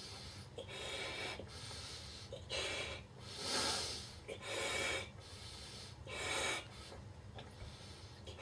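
A 90 cm (36-inch) Qualatex latex balloon being blown up by mouth: a series of breathy rushes as breaths are drawn in and blown into the balloon, the loudest in the middle of the stretch.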